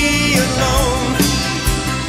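Rock band music: a drum kit keeping the beat under a long held lead note that bends and then wavers in pitch.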